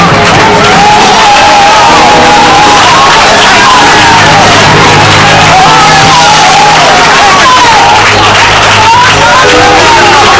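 Loud church music with a steady low bass line, and congregation voices shouting and singing over it.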